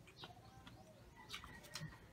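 Near silence, with a few faint bird calls.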